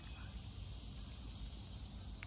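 Quiet outdoor ambience: a steady high-pitched insect chorus over a low rumble.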